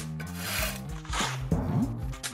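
A shovel scraping into dirt, two rasping digging strokes, over background music.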